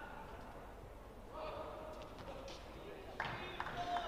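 Badminton rally in an indoor arena: a few sharp racket-on-shuttlecock hits, with voices from the hall rising twice, the louder near the end.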